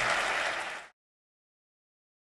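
Audience applauding, cut off abruptly about a second in.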